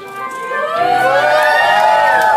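A long sung vocal note that slides up and then back down, replacing the steady instrumental backing of the dance music.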